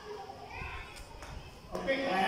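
Faint children's voices in the background, with a few light taps of chalk on a blackboard as a word is written.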